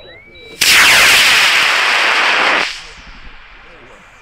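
High-power rocket motor lighting on the pad and burning hard for about two seconds: a sudden loud rushing roar that cuts off at burnout and fades away. Faint electronic beeping stops just as it lights.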